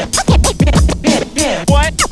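Vinyl scratching on a Technics turntable over a hip-hop break beat: the record is pushed back and forth under the hand so the sample sweeps up and down in pitch, chopped into quick stutters by the mixer's crossfader near the end. Kick drum hits from the break sound underneath.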